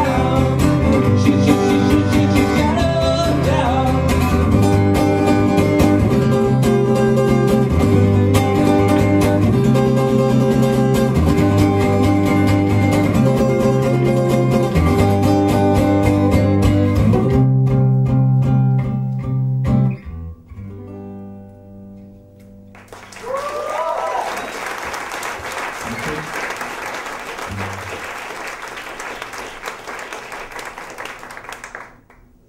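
Live band playing an instrumental passage led by guitar over a repeating bass line; the music stops about two-thirds of the way in. After a short lull, the audience applauds and cheers.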